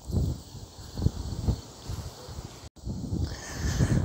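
Wind buffeting the microphone in irregular low rumbling gusts outdoors, with faint insect chirps behind it. The sound drops out completely for an instant a little under three seconds in.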